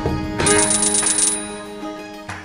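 Video slot game's win sound: a quick, bright run of high-pitched coin-like chimes starting about half a second in and lasting under a second, over the game's background music, marking a small payline win.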